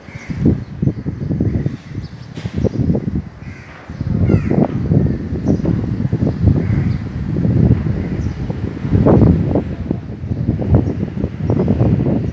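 Outdoor noise dominated by an irregular, gusty low rumble, like wind buffeting the microphone, with a few short bird calls over it.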